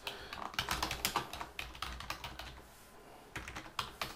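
Typing on a computer keyboard: a quick run of keystrokes, a short pause, then a few more keystrokes near the end.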